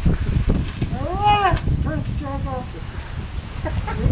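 A person's wordless vocal sound, drawn out and arching up then down in pitch, followed by a shorter second call, over a steady low rumble.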